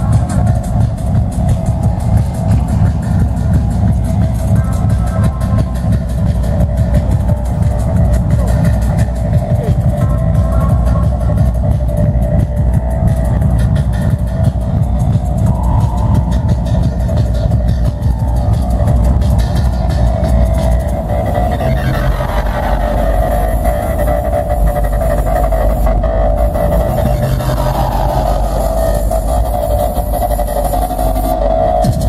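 Electronic dance music played loud over a venue PA from a DJ set, with heavy bass. Rising synth sweeps come in about two-thirds of the way through and again near the end.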